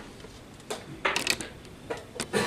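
Wooden chess pieces and chess-clock buttons clicking: a few sharp clacks, with a quick cluster about a second in.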